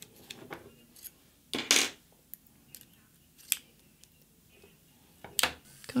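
Light metallic clicks and taps as a bit is fitted into a Makartt electric nail file handpiece, with one louder clatter about a second and a half in.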